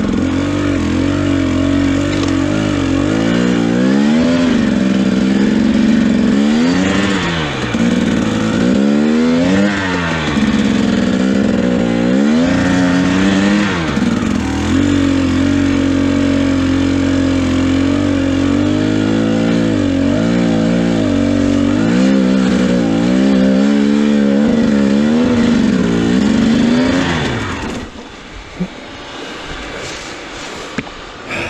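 2017 Husqvarna TE 250 two-stroke enduro engine revving up and falling back over and over under load as the bike labours up a steep, leaf-covered climb. The engine note drops away near the end.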